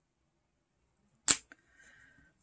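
One sharp click about a second in, with a lighter click just after: a metal-backed single eyeshadow pan snapping down onto the magnetic base of a Z palette.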